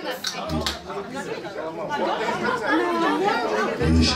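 Chatter: several people talking over one another at once.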